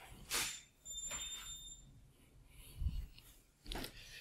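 Faint handling noises, soft rustles and a few low knocks, as a black background board is moved into position. A thin high steady whine sounds briefly about a second in.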